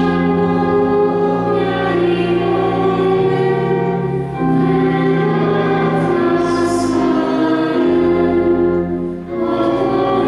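Church pipe organ playing held hymn chords, with a woman's voice singing along. The chords change at short breaks between phrases, about four and nine seconds in.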